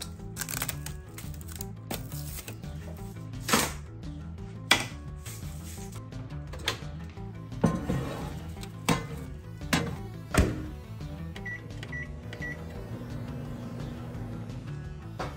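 A bowl is set down in a microwave oven with several knocks and clunks, the door is shut, and the keypad gives three short beeps before the microwave starts running with a faint steady hum, all under background music.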